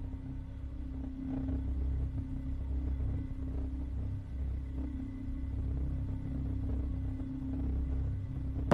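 A low, steady rumbling drone with one held hum tone above it, an ominous soundtrack bed under the scene.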